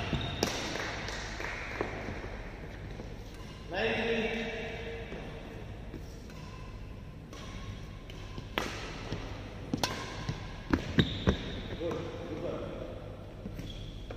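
Badminton rackets striking a shuttlecock in a rally: sharp clicks near the start, then a quick run of hits about nine to eleven seconds in.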